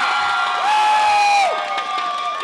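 Theatre audience cheering for a contestant, with long held whoops, one rising in about halfway through.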